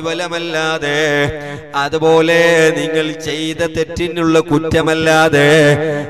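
A man chanting in a melodic, drawn-out intoning voice, the preacher's sung recitation within a religious speech. A steady low drone holds one pitch beneath the voice.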